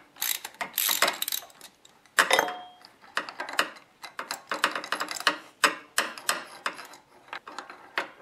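Ratchet wrench clicking in repeated quick runs as it is swung back and forth, turning a 5/8-inch spark plug socket on an extension to unscrew a spark plug from a Kawasaki Vulcan 800 V-twin's cylinder head.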